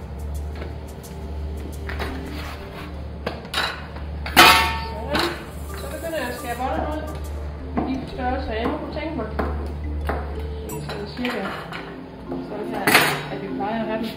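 Metal kitchen utensils clinking and knocking on a wooden worktable while dough is cut into buns with a pizza cutter. The loudest clatter comes about four seconds in and another near the end, over a steady low hum that stops about eleven seconds in.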